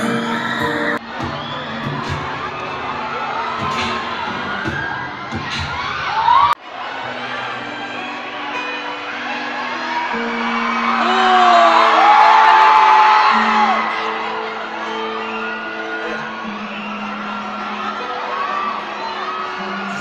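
Live band music played over an arena PA, with a crowd of fans screaming and cheering over it; the screams swell loudest a little past the middle. The deep bass cuts out suddenly about six seconds in, leaving held notes underneath the crowd.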